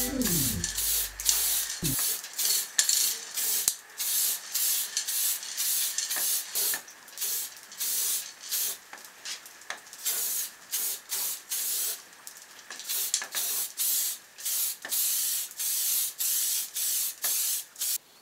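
Aerosol spray-paint can spraying in many short bursts, roughly a second apart, with some longer sprays among them.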